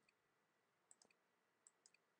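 Near silence broken by a few faint, sharp clicks, a small cluster about a second in and another near the end: computer mouse clicks selecting items on the point-of-sale screen.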